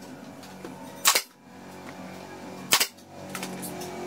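Pneumatic brad nailer firing twice, driving brads into MDF box panels: two sharp shots about a second and a half apart.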